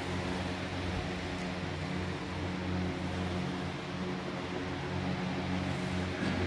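Steady hum and whir of air-conditioner units and electric fans running in a large hall, with a low drone under an even rushing noise.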